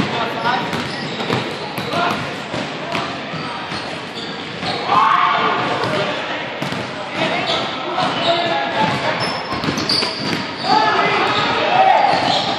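Basketballs bouncing on a hardwood gym floor, with players' shouts and chatter echoing in a large hall.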